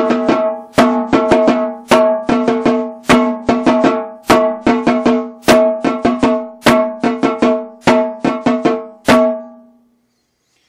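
Snare drum played in a rudiment exercise: repeating groups of strokes, each led by a loud accented stroke about every 1.2 seconds, with a ringing pitched drum tone under them. The playing stops near the end and the ring fades out.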